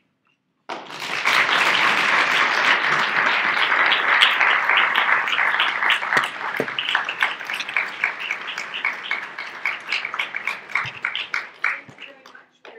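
Audience applauding, starting suddenly just under a second in. It is dense at first, thins into scattered separate claps in the second half and dies away near the end.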